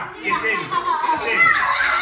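Young children's voices talking and calling out, high-pitched and overlapping.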